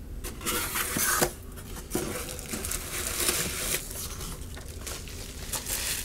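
Cardboard box flaps being handled and plastic bubble wrap rustling and crinkling as it is pulled out of the box, in irregular bursts.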